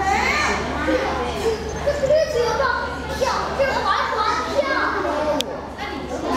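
Several children talking and calling out at once, their high voices overlapping, with one sharp click near the end.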